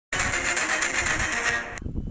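Loud, dense buzzing noise of an intro sound effect that stops abruptly shortly before the end, just ahead of a news-channel logo sting.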